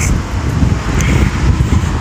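Wind buffeting a phone microphone in an irregular low rumble, over the steady noise of street traffic.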